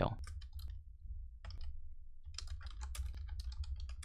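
Computer keyboard keys clicking in quick, irregular typing, over a steady low hum.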